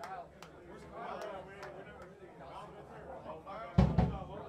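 Overlapping chatter of many voices in a crowded room, with one loud thump near the end.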